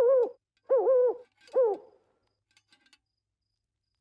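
A cartoon owl hooting "hoo, hoo, hoo": three short hoots within about two seconds, the middle one the longest.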